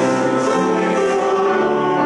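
Church congregation singing a hymn with pipe-organ accompaniment, sustained chords moving from note to note every half second or so.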